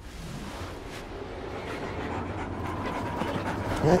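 Dogs panting, a rapid run of breaths that grows gradually louder, with a short rising vocal sound from a dog near the end.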